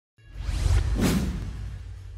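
Whoosh sound effect from an animated logo intro, with a deep low rumble beneath. It starts out of a brief silence, swells to a peak about a second in, then fades away.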